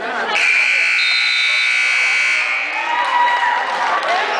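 Gym scoreboard buzzer sounding one long, steady, loud blast of a bit over two seconds that starts and stops abruptly, signalling that time has run out on the wrestling bout. Crowd voices carry on around it.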